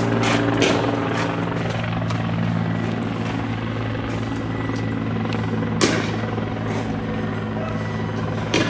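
A steady, low engine drone runs throughout, with a couple of short cracks at the start and a single sharp bang about six seconds in.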